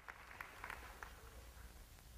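Faint audience applause with a few distinct claps in the first second, over a steady low hum.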